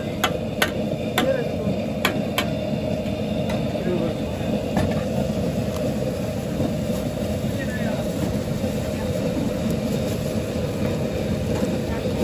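A steel ladle clanks and scrapes against a large metal wok as chow mein is stir-fried, over the steady rush of the wok's gas burner. The sharp metal strikes come often in the first couple of seconds, then only now and then.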